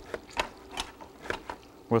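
A handful of light, irregular clicks and knocks from kitchen items being handled on a counter.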